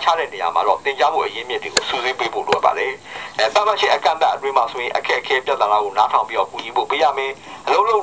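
A person speaking continuously, in speech the recogniser could not make out. It is heard through a laptop's speaker as the recorded narration of a slide presentation.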